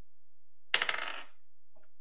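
Dice rolling: a sharp clack and a short rattle of small hard dice tumbling and settling, about three quarters of a second in and over within half a second. It is a d20 roll for a survival check.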